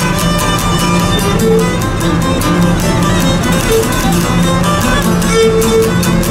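Aegean lyra played with a bow, carrying the melody in held and moving notes, over a laouto strumming a steady, even rhythm: a Greek island syrtos dance tune.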